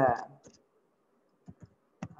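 Computer keyboard keystrokes: a single tap about half a second in, then two quick taps in a row about a second and a half in.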